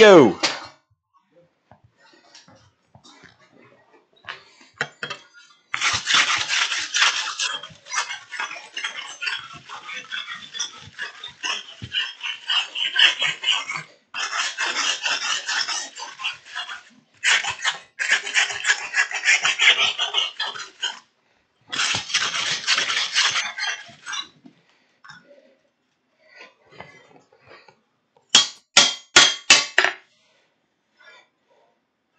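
Metal scraping over hot steel on an anvil in bursts of several seconds each, as a hand tool is scrubbed over the work. Near the end come about six separate hammer blows on the anvil. A brief sound falling in pitch comes at the very start.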